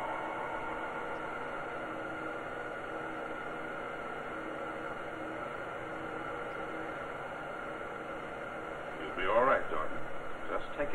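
Steady hum and hiss with a few faint held tones, then a man's voice starts near the end.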